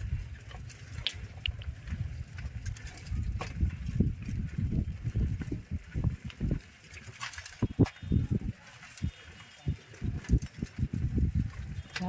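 Footsteps on dry leaves and a dirt path, with irregular low thumps of wind or handling on a handheld microphone.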